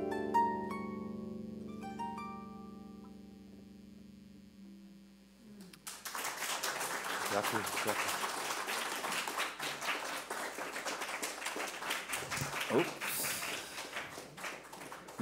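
The last plucked notes of a string instrument ring and die away over about four seconds. About six seconds in, audience applause starts and continues.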